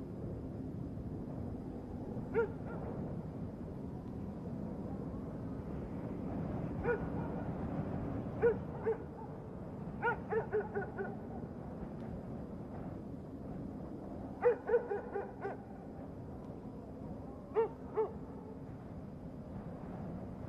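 Film soundtrack under a dialogue-free night scene: a low steady hum, with short pitched tones sounding singly or in quick runs of three or four, about a dozen in all.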